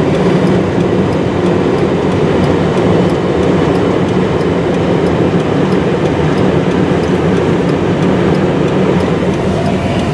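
A vehicle engine running steadily with a loud, even rumble.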